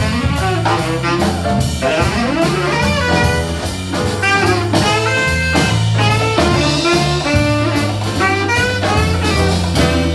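Live jazz combo playing an instrumental passage: tenor saxophone, piano, bass and drum kit, with a moving bass line under quick melodic runs and regular cymbal and drum strokes.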